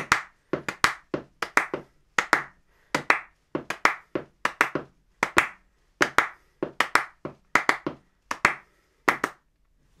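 Hand claps in quick pairs, two claps then a gap, repeating steadily: a five-against-four cross-rhythm clapped as two sixteenth notes followed by three sixteenth rests. The clapping stops near the end.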